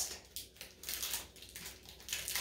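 Faint, irregular crinkling and rustling of plastic packaging as hands try to tear or pull it open.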